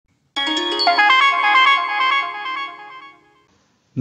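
A short electronic chime jingle: a quick run of bell-like notes starts about a third of a second in, the notes ring on together and fade out by about three seconds.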